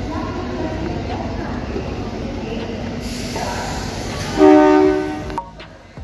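Busy railway platform background with voices, then about four and a half seconds in a train horn sounds loudly with two pitches for about a second before cutting off suddenly.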